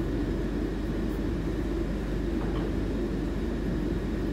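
Steady low background hum with no clear events, of the kind left by a room fan, an air conditioner or the recorder's own noise.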